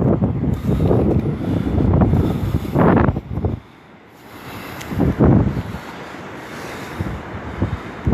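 Wind buffeting a phone's microphone in heavy low gusts for the first few seconds, dropping away briefly, then gusting again more lightly, with surf washing onto the beach behind it.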